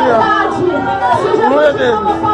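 A woman's voice amplified through a microphone and PA speaker, loud and fervent, its pitch swinging widely, with other voices behind it.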